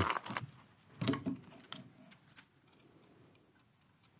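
Light crinkling of a plastic bag and a few soft clicks and taps as a filament spool is handled and taken out of its wrapping, with one slightly louder rustle about a second in; the sounds thin out and stop after about two and a half seconds.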